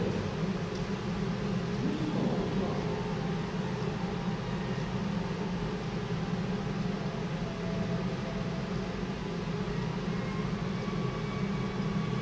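Steady low hum with hiss: room or recording background noise, with no distinct events.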